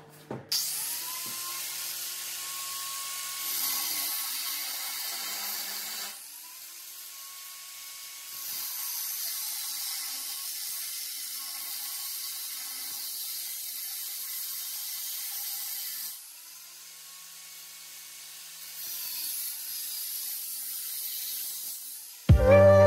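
Handheld angle grinder with a cutoff wheel cutting through a steel bar, its motor whining steadily over the hiss of the cut. About six and sixteen seconds in, the cutting eases for a couple of seconds and the whine climbs as the wheel spins freer, then the wheel bites in again.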